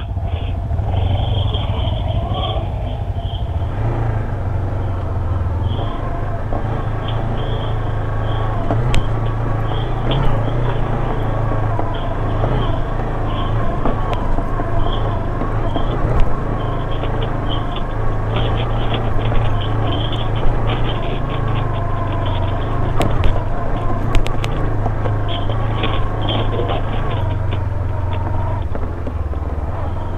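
Bristol Venturi 500 motorcycle engine running steadily at low revs while riding a loose dirt trail, with tyre and chassis noise over the rough ground and occasional sharp knocks from bumps, a few of them standing out above the engine.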